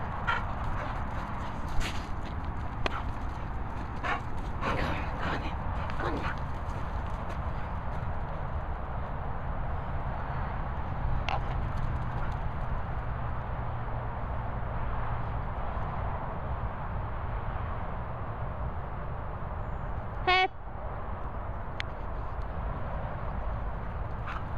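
Steady wind and handling noise on a handheld camera's microphone, with a few soft knocks in the first six seconds and one short, high squeal about twenty seconds in.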